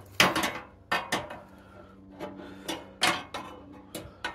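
A loose sheet-steel fender section being handled and set against a bench: a series of short, sharp metallic knocks and clunks at irregular intervals.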